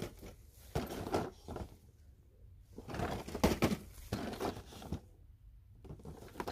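Cardboard Hot Wheels multipack boxes being handled and shifted on a store shelf: several short bursts of rustling and knocking, loudest in the middle.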